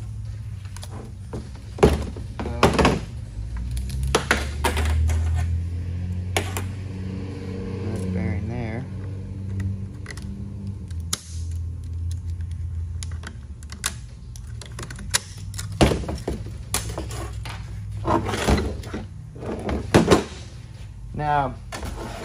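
Metal transmission parts, the clutch drums and gear sets of a 6L90E automatic transmission, knocking and clinking as they are handled and set down on a metal workbench: a dozen or so sharp knocks at irregular intervals. A steady low hum runs underneath.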